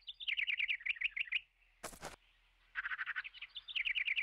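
A small bird's rapid chirping trill, about ten chirps a second, in two runs of roughly a second each with a pause between. A brief burst of noise falls in the pause.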